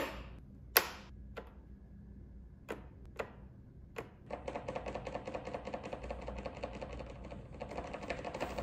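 A few separate clicks as the controls and start button are worked, then, about four seconds in, a few seconds of rapid, even mechanical chatter from the 1995 Honda Elite SR50 scooter's electric starter as it engages.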